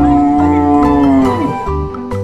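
A cow's single long moo, dropping in pitch as it ends a little over one and a half seconds in, over background music.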